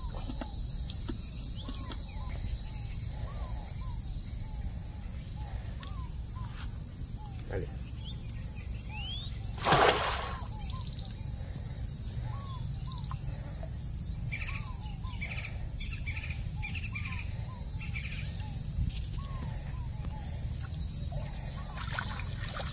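A cast net lands on shallow estuary water with one splash about ten seconds in, the loudest sound. Throughout, birds call with short repeated chirps over a steady high insect buzz.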